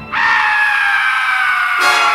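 A sudden shrill, high sound cuts in and is held, slowly falling in pitch, with the low end of the soundtrack dropping away until just before the end.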